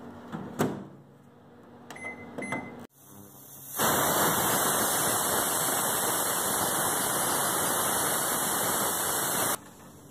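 A microwave oven door clicking shut and a few short keypad beeps, then a pressure cooker on an induction cooktop hissing steadily as it vents steam, loud and even for about six seconds before stopping abruptly near the end.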